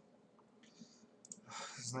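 A few faint, short computer-mouse clicks over near-quiet room tone, then a man starts speaking near the end.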